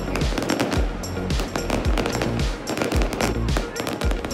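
Fireworks crackling and popping in quick strings of many small bangs a second, with music playing underneath.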